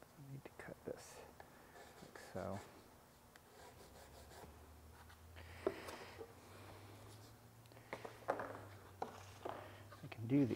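Faint pencil scratching as a cardboard template is traced onto plywood, then the cardboard pattern rustling as it is lifted off and the plywood pieces are handled, with a few light knocks.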